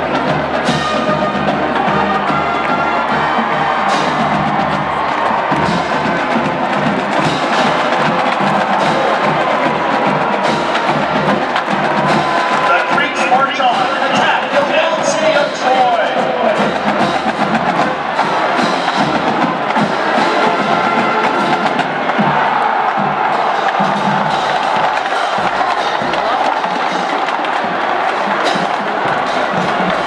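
College marching band playing a march with brass and drums, percussion strikes cutting through throughout, over the murmur of a stadium crowd.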